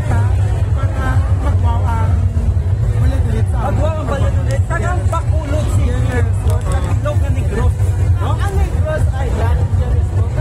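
Talking and crowd chatter over loud music with a heavy, steady bass.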